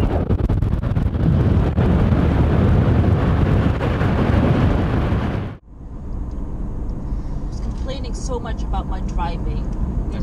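Rushing wind and road noise on a camera microphone held at the window of a car moving along a dirt road, cutting off suddenly about halfway through. Then the quieter steady hum of the car's engine and tyres heard inside the cabin, with faint voices near the end.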